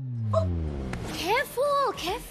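A low tone sliding down in pitch over about a second as the picture changes, then high-pitched exclaiming voices, each call rising and falling in pitch.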